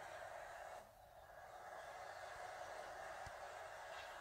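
Faint, steady hiss of room tone that drops briefly about a second in, with one faint click near the end.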